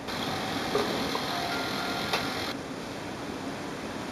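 HP OfficeJet Pro 9015 inkjet printer running its power-on initialization: a steady mechanical whir with a few faint clicks, which drops quieter about two and a half seconds in.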